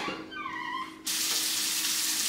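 Kitchen faucet turned on about a second in, water running steadily into the sink as hands are rinsed under it.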